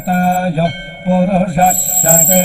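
A voice chanting a mantra on a nearly level pitch, in short phrases, over devotional background music.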